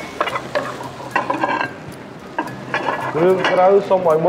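A spatula stirs and scrapes food around a frying pan in short strokes while the food sizzles. A voice comes in near the end.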